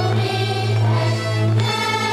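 Group singing of a folk-style tune over a steady low drone.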